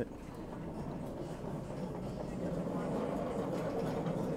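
Steady background hum of a store with faint, indistinct voices.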